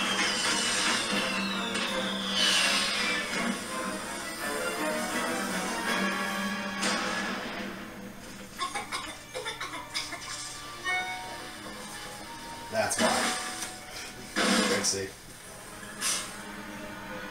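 Animated episode soundtrack playing from a TV or computer speaker: background music with falling whistle-like glides early on, then several short crashing sound effects, the loudest two near the end.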